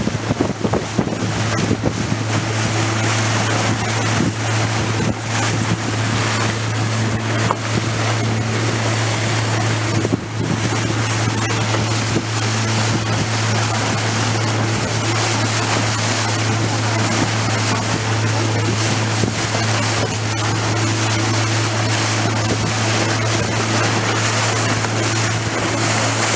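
Motorboat engine running at a steady, unchanging pitch while the small open boat cruises, with water rushing along the hull and wind buffeting the microphone.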